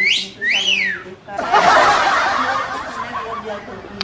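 A wolf whistle: a short rising whistle, then a second one that rises and falls. It is followed by a burst of snickering laughter lasting about two seconds.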